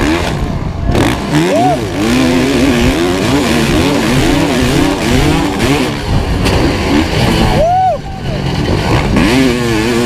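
Kawasaki KX500's two-stroke single-cylinder engine racing on a motocross track, its revs rising and falling constantly with the throttle. There are two short, sharp rev spikes, about one and a half seconds in and near eight seconds, over a haze of wind and track noise.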